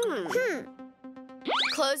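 Cartoon sound effects over light electronic background music: a wobbling boing that slides down in pitch right at the start, then a quick rising glide about a second and a half in.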